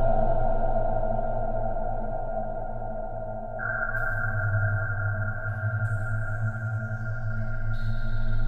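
Background music of sustained droning tones, with a low hum under a held middle tone; a higher held tone comes in about halfway through.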